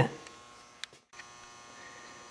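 Faint steady electrical hum of room tone, like mains hum, with many fine steady tones. A single short click comes just under a second in, followed by a split second of complete silence before the hum resumes.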